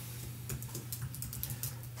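Typing on a computer keyboard: a quick, irregular run of key clicks starting about half a second in, over a steady low hum.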